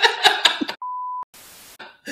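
A censor bleep: one steady, pure beep about half a second long, a little under a second in, following a short burst of men laughing.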